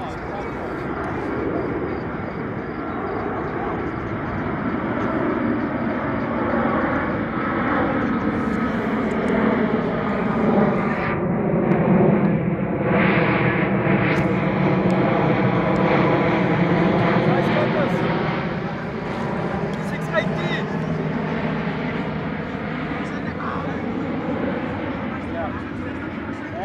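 An aircraft passing overhead: a steady rumble that builds to its loudest about halfway through and then fades, with voices in the background.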